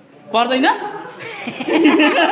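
A short voiced utterance, then people laughing and chuckling, starting near the end.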